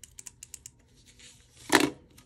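Plastic correction-tape dispenser run across the planner page: a quick run of small faint ticks, then a short, louder rustle near the end.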